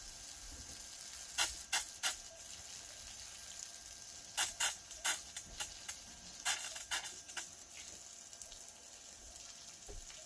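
Water spraying from a garden hose nozzle as the house plumbing's pressure is bled off with the pump off, a steady hiss broken by small groups of short sharp spurts.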